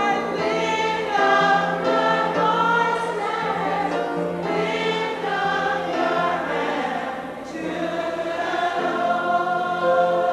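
A congregation of women singing a gospel worship song together, held notes sliding from one to the next, with a lead voice at the microphone over the group.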